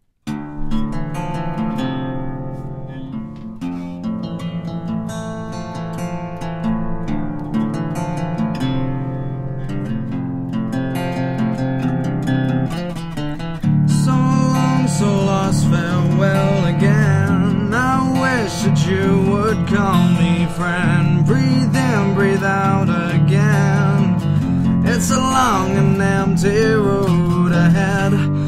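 Acoustic guitar playing the instrumental intro of a rock song, before the vocals come in. About halfway through it gets louder, and a melody with bending, wavering notes comes in over the chords.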